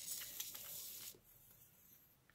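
Fine-nozzled squeeze bottle of acrylic craft glue being squeezed onto card stock: a faint, hissy squirt with a few small clicks that lasts about a second, then stops.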